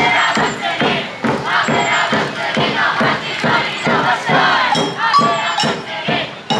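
Samba bateria drums, surdo bass drums with snare-type drums, playing a steady batucada beat while the players shout together over it.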